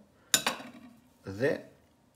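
A metal table knife clinks once against a ceramic plate, with a short bright ring.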